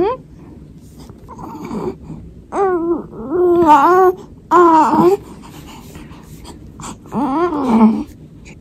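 A four-month-old baby girl babbling: about five short vocal sounds, one around two seconds in, a cluster between two and a half and five seconds, and one more near the end.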